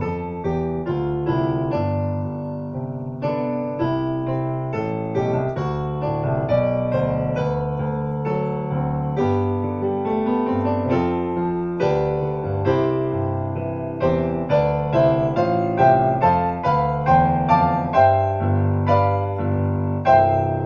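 Digital piano played with both hands: a continuous run of sustained chords and melody notes, several a second, ringing into one another. The playing grows louder with sharper accented notes in the last few seconds.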